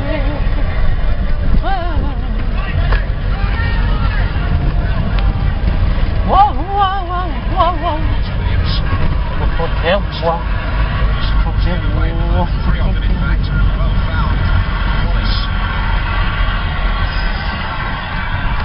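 Steady low rumble of a Proton car's engine and road noise heard inside the cabin while driving, with a few brief snatches of voices.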